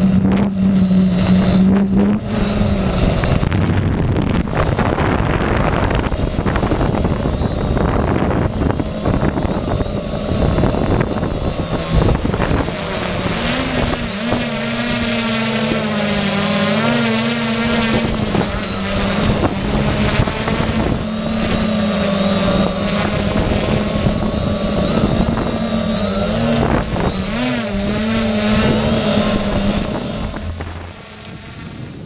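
Octocopter's electric motors and propellers buzzing steadily, heard on the onboard camera's microphone, their pitch wavering up and down from about halfway through as the motors change speed. A heavy rushing of strong wind and prop wash runs under it.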